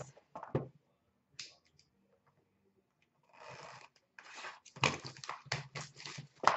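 A sealed cardboard box of trading cards being picked up and handled: a couple of light knocks in the first second, then plastic shrink wrap rustling and crinkling, with sharp crackles near the end as the wrap is torn open.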